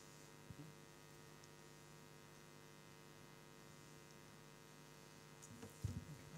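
Near silence: a steady low electrical mains hum, with a faint click about half a second in and a brief low bump near the end.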